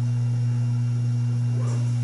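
Steady low electrical hum, mains hum in the microphone and sound system, holding at one pitch with nothing else prominent.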